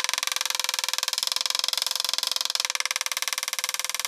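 A rapid, machine-even pulsing buzz that starts abruptly, a fast-forward sound effect laid over sped-up footage of a knife edge being struck repeatedly into a wooden block.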